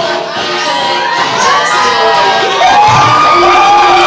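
Bar audience cheering, whooping and shouting, many voices overlapping, growing louder about two-thirds of the way in.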